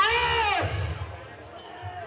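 Loud drawn-out shouts from a high-pitched voice, each rising and then falling in pitch. The last shout fades out about a second in, over dull low thumps.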